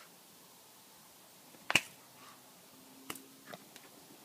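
A quiet room broken by one loud, sharp snap-like click a little under two seconds in, then two fainter clicks about a second and a half later.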